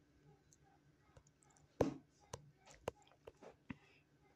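A few soft, scattered clicks and taps over quiet room tone, the sharpest about two seconds in, with several smaller ones in the second half.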